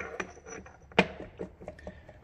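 A few light metallic clicks and knocks, the sharpest about a second in, as a splined CV stub is rocked in the axle bore of a helical-gear limited-slip differential carrier. The bore is about twenty thou oversized, so the shaft has play in it.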